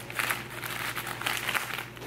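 Foil-wrapped chocolates crinkling and clattering as they are poured out of a plush bag onto a stone countertop, a continuous run of rustles.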